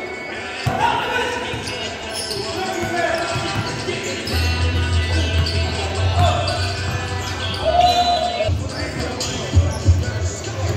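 A basketball bouncing on a gym floor as a player dribbles, with players' voices calling out over it.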